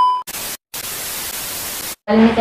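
Television-static sound effect. It opens with the fading tail of a steady high beep, then a short burst of hiss, a brief gap, and a steady hiss of static that cuts off suddenly just before the end.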